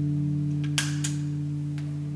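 Fender Stratocaster electric guitar chord ringing out through an amplifier, held steady and slowly fading, with two faint clicks about a second in.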